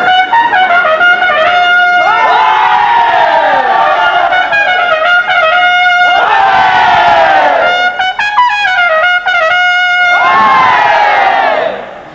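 Trumpet playing runs of short repeated notes, each ending in a long swooping fall in pitch, three times over.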